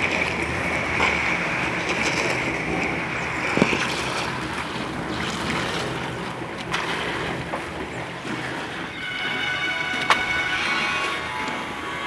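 Wet concrete being raked and spread across a roof slab, sloshing and scraping, over a steady mechanical drone. There is a sharp knock about three and a half seconds in and another about ten seconds in.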